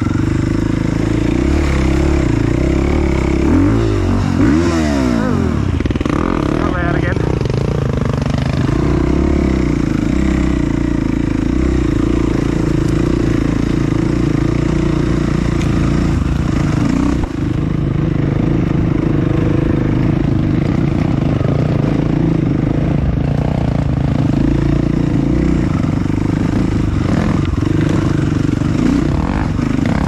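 Off-road dirt bike engine running under the rider, carried along a rough forest trail; the revs rise and fall several times early on, then settle to a steadier drone.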